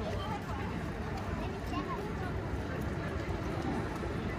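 Indistinct chatter of passers-by walking past, over a steady low rumble.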